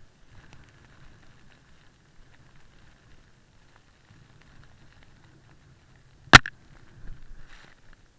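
Faint, muffled rumble of a snowboard riding through deep powder, heard through an action camera's housing. One sharp, loud knock about six seconds in, followed by a brief burst of rushing noise.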